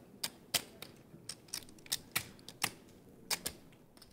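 A run of sharp, irregular clicks, about two or three a second, some in quick pairs.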